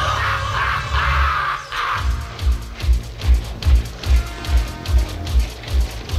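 Cartoon soundtrack: a crackling magic-energy effect over a low rumble, then, about two seconds in, a deep regular throb about two and a half times a second under the music.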